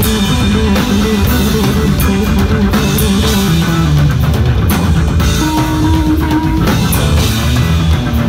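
A punk rock trio playing live and loud: electric bass, drum kit and electric guitar together, with a note held for about a second past the middle.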